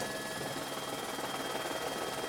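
Steady drone of an aircraft's engine heard from inside the cabin, with a few faint steady whining tones over it.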